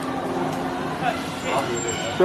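Street noise: a steady low traffic hum with indistinct voices in the background.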